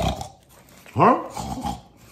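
A dog vocalizing: a short sound at the start, then a louder one rising in pitch about a second in, followed by a smaller one.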